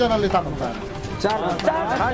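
Several people talking over one another, their voices overlapping.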